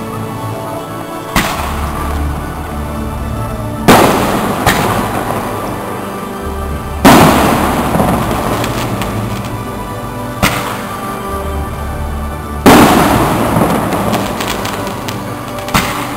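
Fireworks display: aerial shells bursting with about six loud bangs, roughly every two to three seconds, each followed by a long fading crackle. Music plays steadily underneath.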